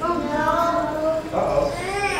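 High-pitched voices, drawn out rather than clipped, with a second voice coming in about halfway through.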